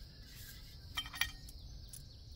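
Quiet outdoor background with a faint, steady high hiss of insects, and two light clicks about a second in from small metal hardware (a bolt, nut and washers) being handled in gloved hands.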